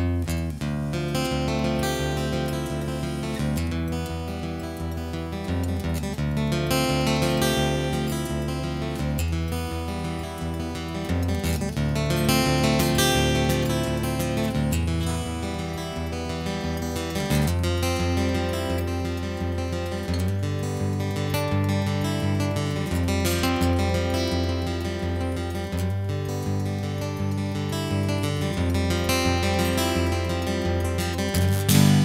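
Acoustic guitar playing the instrumental opening of a song, with bass notes ringing under the melody; it starts right at the beginning.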